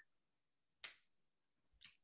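Near silence in a pause between words, broken by one short soft click just under a second in and a fainter one near the end.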